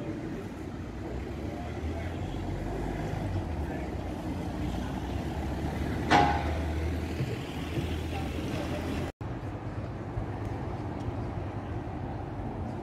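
City street ambience: a steady low traffic rumble with faint voices of passers-by. About six seconds in comes a single sharp ringing clank, the loudest sound in the stretch. Shortly after nine seconds the sound drops out for a moment.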